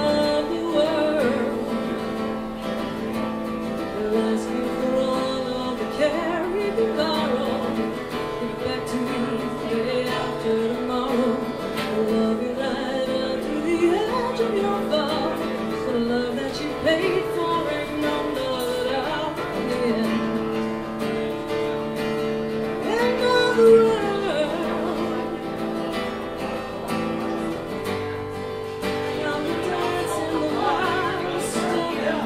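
Solo acoustic guitar and voice performing a folk song: guitar chords played steadily under a sung melody.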